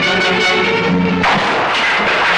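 Film background score, with a sudden burst of noise over the music a little past a second in.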